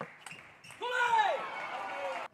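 A table tennis ball clicks a couple of times at the end of a rally, then a player lets out a loud, drawn-out shout that rises and falls in pitch, celebrating the point, and is cut off abruptly.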